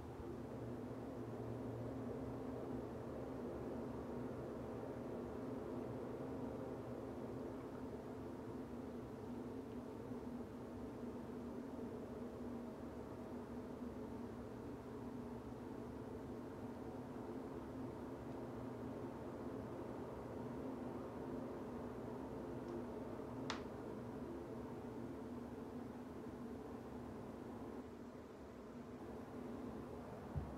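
Steady low hum of a bathroom ceiling exhaust fan, with one faint click about two-thirds of the way through.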